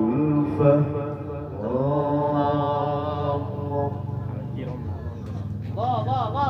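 Quran recitation (tilawah) by a male qari, chanted in long melodic phrases through a microphone and PA, with drawn-out held notes. The phrase fades out about four seconds in.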